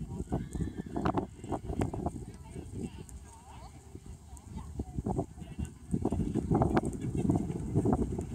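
Indistinct background voices with scattered, irregular knocks, louder in the last couple of seconds.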